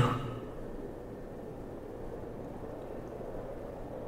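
Steady background noise, a low even hiss with no distinct events, from an ambient sound bed.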